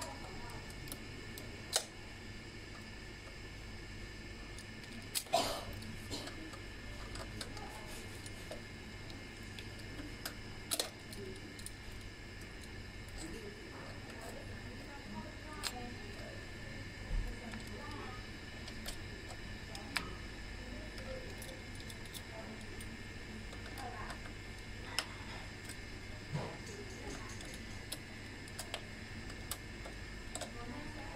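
Small metallic clicks and taps of a folding multi-tool's hex key and a steel brake cable being handled at a bicycle brake's cable-clamp bolt while the brake is adjusted. The clicks are scattered and irregular, over a steady low hum.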